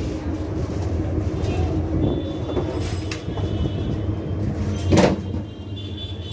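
Busy indoor ambience of a cake shop: a steady low rumble with a murmur of background noise, and one short loud clatter about five seconds in.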